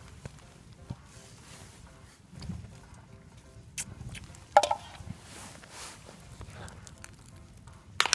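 Faint footsteps and rustling as someone walks over rough moorland with a handheld camera, with a few short sharp knocks, the loudest about halfway through.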